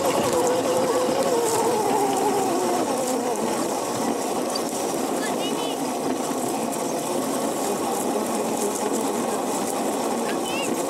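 Electric motor of a Razor go-kart whining, its pitch falling over the first three seconds, over a steady rumble of the kart running across grass.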